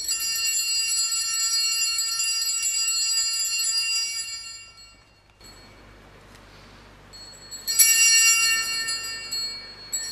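Altar bells rung twice at the consecration of the chalice. The first ringing sounds as the chalice is raised and fades out about four and a half seconds in. A second ringing, starting loudest, comes near the end as the priest bows before the chalice.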